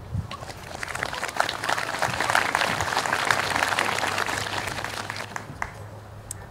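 Audience applauding, swelling through the middle and tapering off near the end.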